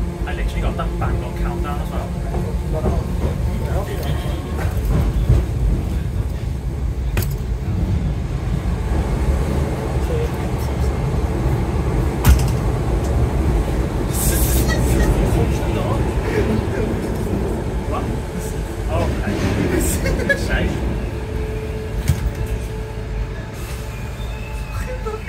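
Class 508 electric multiple unit heard from inside the carriage, running through a tunnel with a steady low rumble of wheels on rail, a few sharp knocks and a brief hiss a little past halfway. The sound eases near the end as the train comes into a station.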